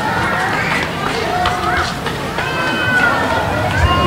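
Overlapping chatter of many voices, adults and children, in an audience; no single voice stands out.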